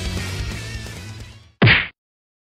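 Music fading out, then a single loud punch sound effect, one short whack, about one and a half seconds in.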